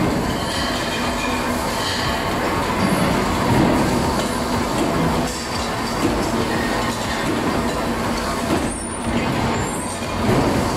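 Loud, steady factory din from a flywheel-driven mechanical power press and the surrounding metalworking machinery forming stainless steel bowls, a continuous mechanical rumble with a low hum and some metallic squeal.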